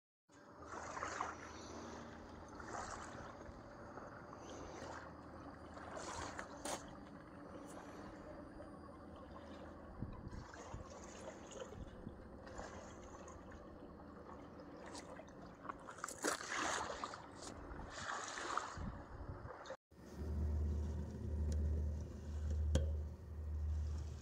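Small waves lapping and splashing against a gravel riverbank in irregular surges. Near the end the sound changes to a steady low hum that pulses about once a second.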